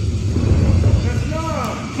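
A steady low rumble, with a person's voice coming in during the second half.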